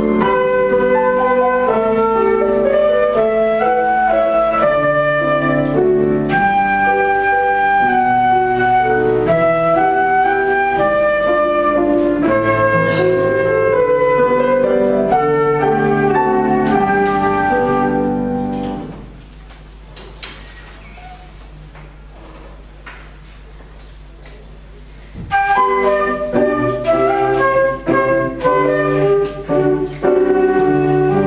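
Transverse flute and piano playing a waltz, the flute carrying the melody over piano chords. The playing stops about 19 seconds in, leaving about six seconds of quiet, and then flute and piano start again.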